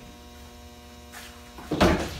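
Steady electrical mains hum, a stack of even tones held throughout, with a short loud noise near the end.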